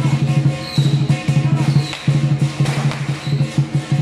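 Lion dance percussion: a large drum beating a fast, steady rhythm, with cymbals and gong ringing over it.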